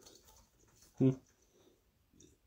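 A man's short, low closed-mouth "hmm" about a second in, otherwise quiet.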